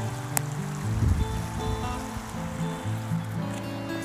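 Background music with slow, sustained notes that change pitch every second or so.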